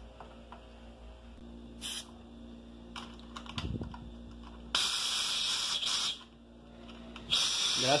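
Pressurised gas hissing out of a Cornelius (corny) keg's pressure relief valve as its pull ring is lifted, venting the keg in two bursts, the first about a second and a half long and the second shorter, near the end. A short puff comes about two seconds in, and a light knock follows a little later.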